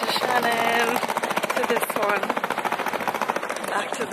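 Small hard wheels of a rolling suitcase clattering over paving slabs: a rapid, even rattle of many ticks a second, with faint voices over it.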